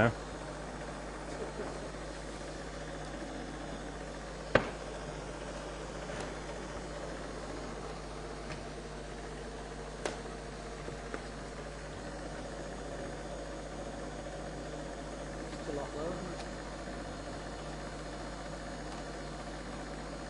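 Steady low hum and hiss, with one sharp click about four and a half seconds in and a fainter click around ten seconds.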